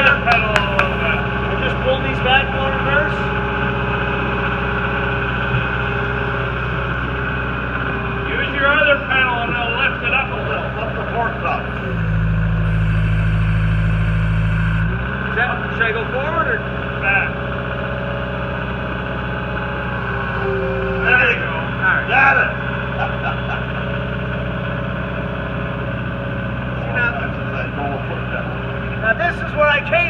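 Diesel engine of a New Holland skid steer loader running steadily as the machine is driven around, growing louder for about three seconds near the middle.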